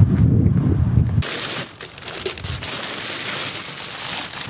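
Wind buffeting the microphone of a hand-carried camera as the operator walks, then an abrupt switch about a second in to a steady hiss with handling and rustling noise.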